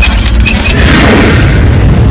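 Loud, continuous deep booming rumble of film sound effects with music under it, a few brief high chirps and whooshes near the start.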